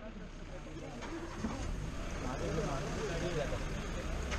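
Open safari jeep engine idling with a steady low hum, under quiet voices of people talking.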